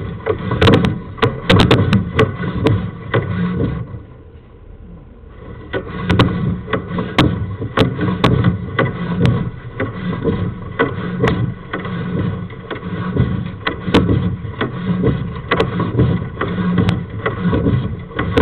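Sewer inspection camera's push cable being fed down a sewer lateral: continuous scraping and rattling with many sharp clicks and knocks, easing off briefly about four seconds in and then picking up again.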